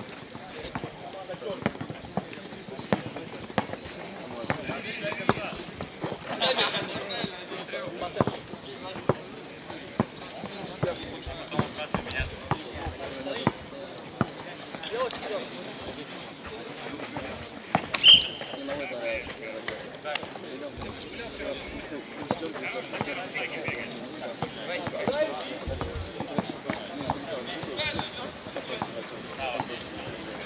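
A basketball bouncing and being dribbled during a streetball game, in irregular thuds, with players' voices in the background. There is one louder sharp sound about eighteen seconds in.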